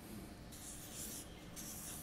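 Felt-tip marker drawing on flip chart paper, two faint scratchy strokes as a circle is drawn around a symbol.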